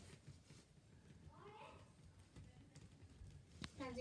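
Near silence, with faint rubbing and small taps from fingers pressing a self-adhesive LED light strip into place; a single sharp click near the end.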